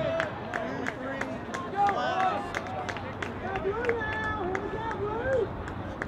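Players and spectators shouting across an outdoor lacrosse field during play, several voices calling over each other, with repeated sharp clicks throughout.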